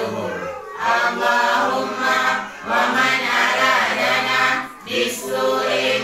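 Several voices chanting an Arabic Islamic supplication (dua) together, unaccompanied, in long drawn-out phrases with brief breaks for breath about every two seconds.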